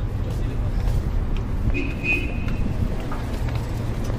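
Street traffic: a steady low engine rumble of motor vehicles close by, with a brief high-pitched tone about two seconds in.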